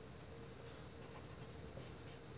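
Faint hand-writing strokes, a few short scratches of a pen or marker on a writing surface spread through a quiet room.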